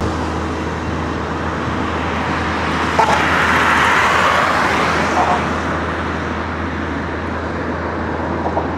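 Road traffic on a bridge: a heavy truck passes close by, its engine and tyre noise swelling to a peak about halfway through and then fading, over a steady low rumble.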